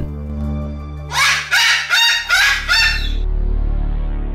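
A rooster crowing one four-part cock-a-doodle-doo about a second in, over a low steady drone from the background music.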